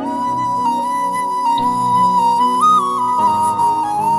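Background music: a flute playing a slow melody of held notes that step up and down, over a low sustained accompaniment.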